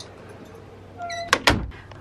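A door being shut: a short squeak about a second in, then two sharp knocks and a low thud as it closes.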